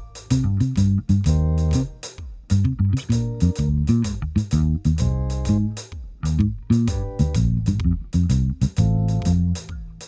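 Fender electric bass playing a syncopated, arpeggio-based bass line with a feel between reggae and swing. It plays over a backing track with drums keeping a steady beat.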